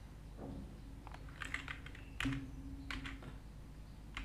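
A few separate keystrokes on a computer keyboard, typing a short search term.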